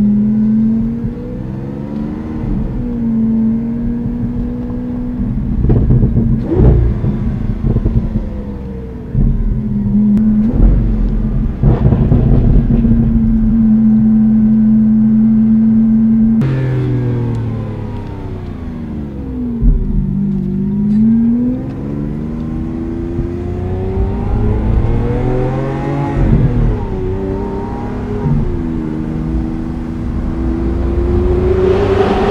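Lamborghini Aventador Roadster's V12 engine heard from inside the cabin while driving. Its pitch climbs and holds through several accelerations, drops suddenly about halfway through, then falls and rises again a few times, with a few short sharp sounds in the first half.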